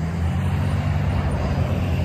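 Road traffic passing by: a steady low rumble of vehicle engines and tyres.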